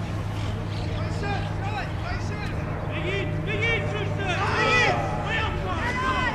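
Players shouting and calling to each other across a rugby pitch, heard from a distance, the calls busiest and loudest about four to five seconds in, over a steady low hum.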